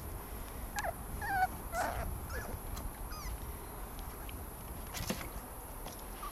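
Puppies whimpering in short, high, wavering cries, several in the first three seconds, with a single sharp click about five seconds in. The whimpers come from pups stuck in a plastic wading pool that they can't climb out of.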